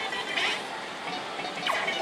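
Music and electronic sounds from a Versus pachislot machine and the pachinko hall around it as the reels are spun and stopped, with a short bright sound about half a second in.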